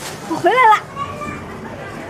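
A woman's high-pitched voice calling out "hey!" once, with the pitch rising and then falling, over the steady background murmur of a busy market.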